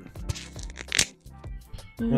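Background music under a man's eating noises: small clicks of chopsticks and chewing, with a short sharp hiss about a second in.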